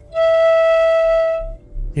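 Piccolo sounding one held low E with the tube fully covered, a steady note lasting about a second and a half that stops cleanly well before the end.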